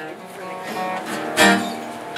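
Acoustic guitar being played: picked notes ringing, with one loud strum about halfway through.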